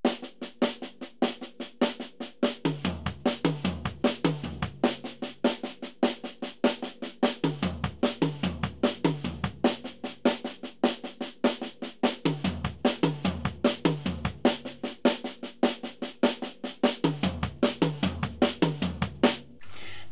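Acoustic drum kit playing a two-bar triplet exercise four times at a steady tempo: a bar of even triplets on the snare drum, then a four-note figure of snare drum, small tom, floor tom and a single right-foot bass drum note, played three times across the bar's twelve triplet notes.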